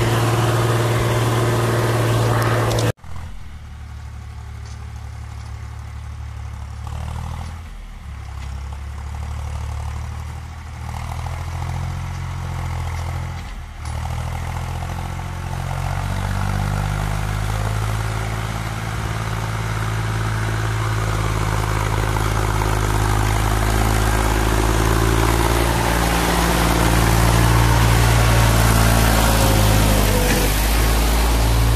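HMT 3522 tractor's diesel engine running under load, pulling a fully loaded trolley through soft ploughed ground. The sound drops away suddenly about three seconds in and returns fainter, then grows steadily louder toward the end, with small changes in engine speed.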